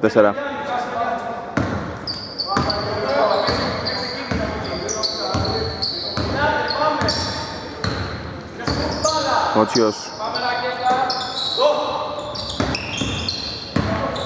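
A basketball bouncing repeatedly on a hardwood court, with sneakers squeaking and players calling out, echoing in a large, mostly empty hall.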